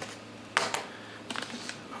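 A few light clicks and taps, the loudest about half a second in and a small cluster near the end.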